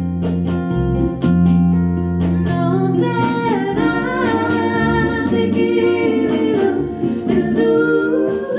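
Live song: a woman singing with her own acoustic guitar. The guitar chords play alone at first, and her voice comes in about three seconds in and carries the melody over the strumming.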